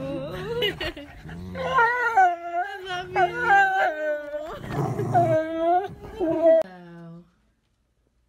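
A large dog howling and whining in long, drawn-out, wavering notes that rise and fall in pitch. The notes stop about seven seconds in.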